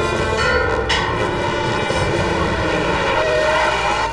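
Cartoon sound effect of car engines running loudly, with a rising whine in the last second as police cars race in.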